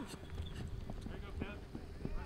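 Indistinct shouting from flag football players during a play, with a few scattered short knocks over a low rumble.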